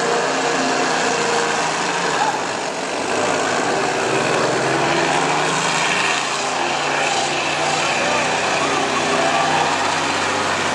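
International semi truck's diesel engine running hard under load as the tractor pulls the weight sled down the track.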